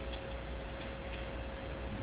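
Room tone in a hall: an even hiss with a faint steady hum and a few light ticks.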